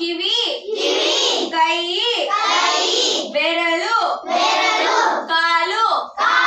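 Call-and-response chanting: one girl calls out Kannada words for body parts, and a roomful of children chant each word back in unison, about one exchange every second and a half.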